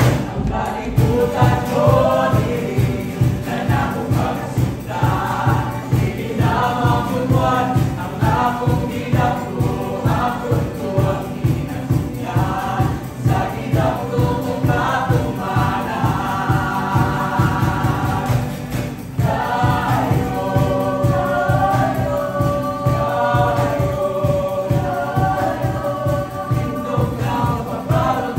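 A song from a stage musical: voices singing a melody to acoustic guitar accompaniment over a steady low pulse.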